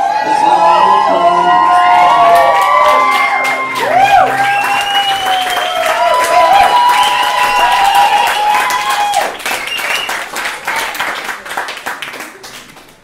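Audience cheering and whooping with applause, many voices with rising-and-falling whoops over dense clapping. The whoops fade out about three-quarters of the way through and the clapping dies away near the end.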